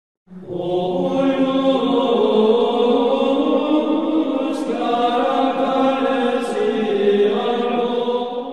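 Liturgical chant as intro music: voices singing slow, long-held notes, starting a fraction of a second in.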